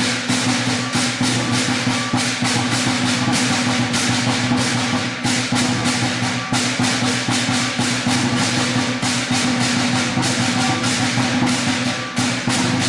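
Chinese lion dance percussion band playing: a large lion drum beaten in a fast, continuous rhythm with crashing cymbals over it.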